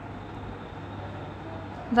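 Steady low background noise with a faint hum, no distinct event.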